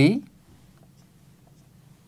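Marker pen writing on a whiteboard: faint, light strokes over a low, steady room hum.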